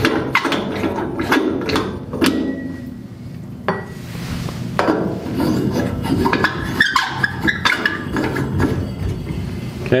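Sharp clicks and knocks, roughly one a second, as jumper leads are unplugged and plugged into the terminals of a lab power trainer panel, switching the load from a heater to a light bulb.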